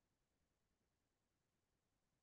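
Near silence: the audio track is all but empty, with no sound events.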